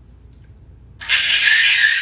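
A woman's high-pitched, pterodactyl-like shriek of delight, about a second long, starting about a second in and cutting off sharply.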